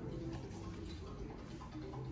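A regular ticking over a steady low hum, with faint held tones in the background.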